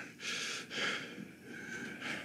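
A man breathing: a couple of short, breathy exhales without voice, then a softer breath near the end.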